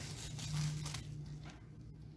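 Quiet room with a low steady hum and faint handling noise as cookie dough is pressed by hand and a wooden rolling pin is picked up.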